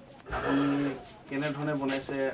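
A person speaking, with short stretches of voiced talk; no other distinct sound stands out.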